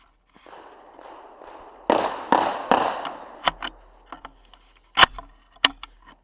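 Three sharp gunshot-like cracks about two seconds in, each ringing off briefly, then a few short metallic clicks and clacks of gun handling, the loudest near the end.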